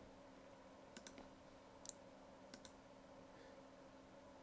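Faint computer mouse-button clicks, five in all and mostly in quick pairs, over a faint steady electrical hum.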